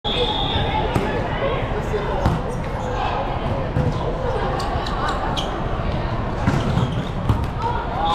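Indoor volleyball rally in a large hall: a short high referee's whistle at the start, then sharp smacks of hands on the ball as it is served and played, over a steady babble of players' and spectators' voices.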